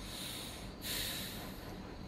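Two soft breaths out through the nose, each a hissing puff about a second long.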